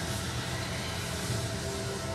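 Film trailer soundtrack: a steady, dense low rumble of score and sound design, with sustained held tones over it.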